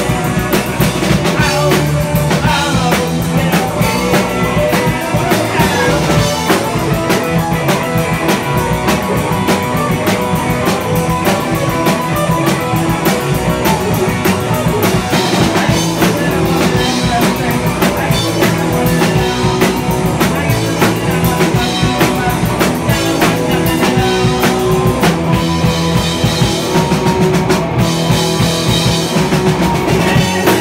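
A rock band playing live: electric guitars, bass guitar and a drum kit keeping a steady, busy beat.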